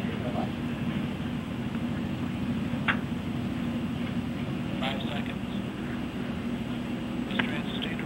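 Steady low rumble and hum on a band-limited launch-control voice loop, with three short, faint fragments of voice.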